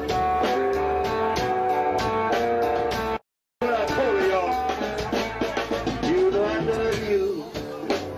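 Live blues band playing: a resonator guitar with bending notes over drums and bass. The sound cuts out completely for a moment about three seconds in, then the band comes back.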